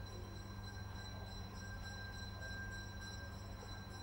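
A steady low electrical hum with faint, thin high-pitched tones held unchanged throughout. It is the background noise of the recording, with no distinct event.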